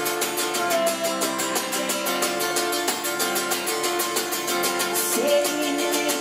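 Solo acoustic guitar strummed fast in an even, driving rhythm, chords ringing through an instrumental break with no singing.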